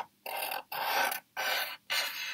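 Marker tip scratching across paper in four short strokes of about half a second each, drawing the bumpy outline of a cloud.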